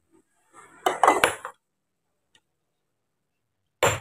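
Sledgehammer striking stone by hand: a quick run of sharp, ringing, clinking blows about a second in, then one more hard strike near the end.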